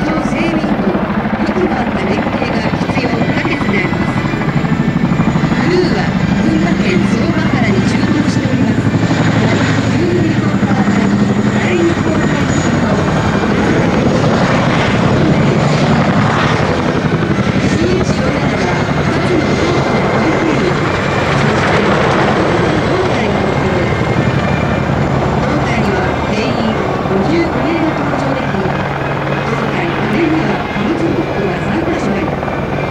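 CH-47 Chinook tandem-rotor military helicopter flying in low and setting down, its rotors and turbines running loud and steady throughout, swelling midway as it passes close.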